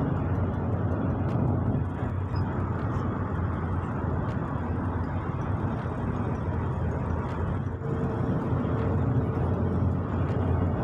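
Steady road and engine noise heard from inside a moving car's cabin at highway speed: a low, even rumble of tyres and engine.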